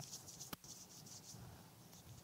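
Faint rustling and shuffling, with one sharp click about half a second in.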